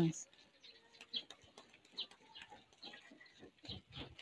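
Faint birds chirping now and then, with a brief low coo-like call about a second in, over scattered light ticks.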